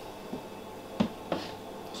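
Two short sharp clicks about a third of a second apart, with a fainter tap before them: hard plastic knocking as a snake tub in a plastic rack is handled.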